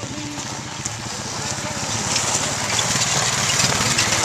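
Honda Rancher ATV's single-cylinder engine running as the quad pulls away over gravel, slowly growing louder.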